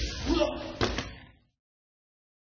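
A sharp slap of a body or hand striking the training mat, with a short vocal sound just before it; the sound then cuts off abruptly to silence.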